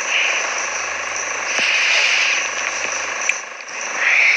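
Steady hiss of background noise from the recording, swelling a little a couple of times, over a faint low hum.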